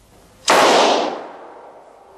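A single handgun shot fired in a room: a sudden loud blast about half a second in that rings out and fades over the next second.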